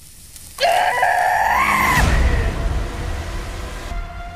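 A person's high-pitched scream, rising in pitch over about a second and a half and cut off abruptly, followed by a low rumble.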